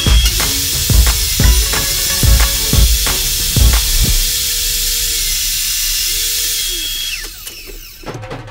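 Background music with a steady drum beat through the first half, over a table saw running steadily; near the end its motor is switched off and winds down, falling in pitch.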